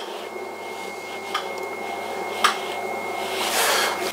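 Electric potter's wheel running steadily, with wet hands working the spinning clay. A few light clicks, and a swelling hiss near the end.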